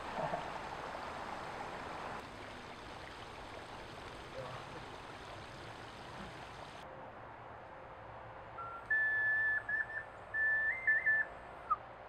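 Steady rush of running water for the first half, cut off suddenly. From about three-quarters of the way in comes a high, pure whistled tune of short held notes stepping up and down in pitch.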